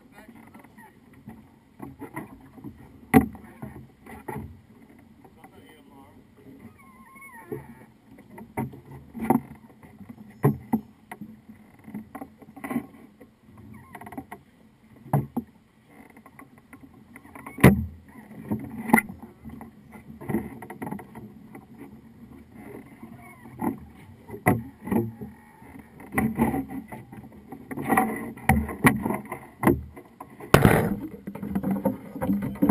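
Irregular knocks and thumps on a boat's deck from people moving about and handling gear close to the camera, the sharpest at about three seconds in and again near the middle, and coming more often near the end.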